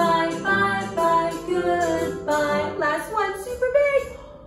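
A woman singing a children's action song with music behind her.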